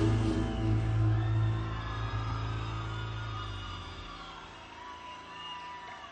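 A live band's final chord rings out over a held low bass note and fades away over about four seconds. Faint crowd cheering and whistles follow near the end.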